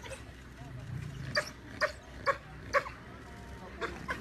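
Spotted hyenas calling: four short, sharp yelps about half a second apart in the middle stretch, with a click near the end.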